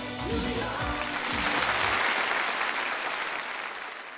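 A pop song's closing bars, bass and pitched notes, end about two seconds in as audience applause swells over them and carries on, fading toward the end.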